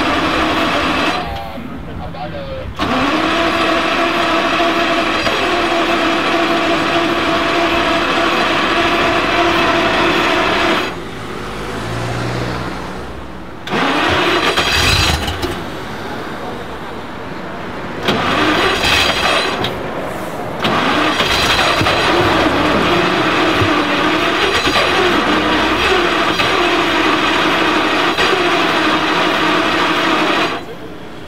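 1947 Tatra 87's air-cooled overhead-cam V8 running at idle, its steady note broken by a few short quieter spells. Later on the pitch rises and falls with light blips of the throttle.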